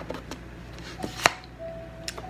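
A tarot card being drawn from the deck and handled: a few light taps, then one sharp card snap about a second in.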